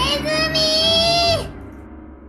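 A long, high-pitched cartoon-voice shriek from Doraemon, frightened at the sight of a toy mouse, held on one note and then dropping off and stopping about a second and a half in. Background music plays under it.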